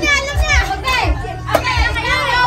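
A group of children shouting and chattering excitedly, several high voices overlapping with no clear words.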